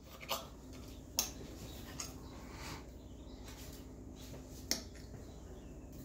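A few light clicks of a metal fork against a ceramic plate as a piece of fried egg is cut and lifted, the sharpest about a second in, over a faint steady hum.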